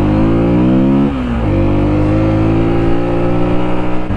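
Sinnis Terrain 125's small single-cylinder engine pulling away under the rider. Its pitch rises for about a second, drops briefly, then holds steady.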